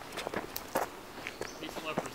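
Footsteps crunching and rustling through dry fallen leaves, a run of irregular crackles.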